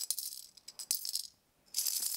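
Short intro jingle carried by a shaker-like rattle: two bright rattling bursts about a second and a half apart, with a couple of light clicks between them.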